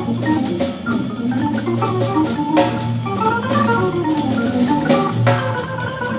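Hammond organ playing a jazz solo over its own low bass line, with a drum kit keeping time on the cymbals.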